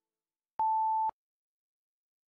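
A single electronic beep: one steady, pure high tone lasting about half a second, a little over half a second in. It marks the start of an on-screen ten-minute countdown timer.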